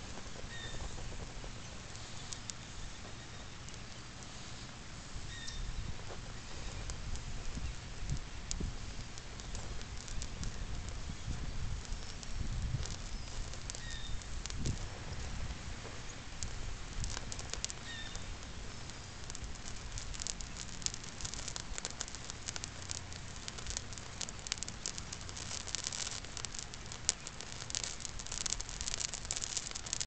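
Burning plastic Stretch Armstrong toy head crackling and popping, the crackles growing much denser over the second half, over a low steady rumble.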